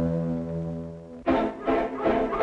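Orchestral film music: a held low brass chord that slowly fades, then just over a second in the full orchestra comes back with a bouncy, rhythmic passage.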